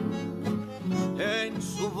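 Music: the program's sung theme song, a singer over string-instrument backing, the voice sliding up into a new line about a second in.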